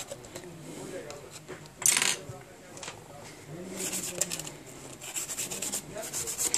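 Rubbing and scraping on a phone's metal midframe as it is cleaned of old adhesive and dust, with a short sharp burst of noise about two seconds in and quick rhythmic scratchy strokes through the second half.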